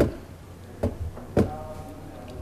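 Three sharp knocks on a tabletop near the microphone, as something on the table is handled. One comes at the start, one a little under a second in, and the loudest about halfway through.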